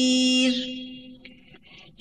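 Melodic Quran recitation: the reciter's long held note at the end of a verse tapers off about half a second in and fades away, leaving a brief, almost quiet pause before the next verse.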